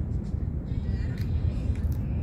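Wind rumbling on a phone's microphone outdoors, a low buffeting rumble, with faint higher sounds of the city behind it.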